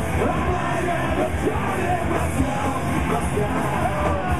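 Live punk rock band playing: distorted electric guitar, electric bass and drums, with shouted lead vocals over the top.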